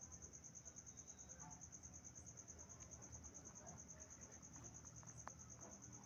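Near silence: room tone with a faint, steady, high-pitched pulsing whine.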